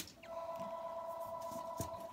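A click, then a steady electronic beep tone of two pitches sounding together for about two seconds before it cuts off.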